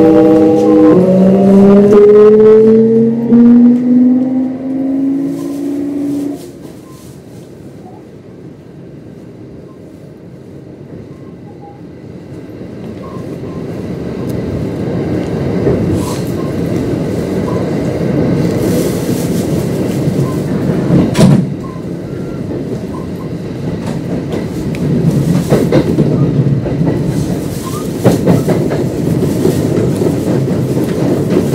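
Kintetsu 1026 series train's Hitachi GTO-VVVF inverter whining in several tones that rise in pitch as the train accelerates, falling away about six seconds in. After it, the rumble of wheels on rail builds steadily, with occasional sharp clacks over rail joints.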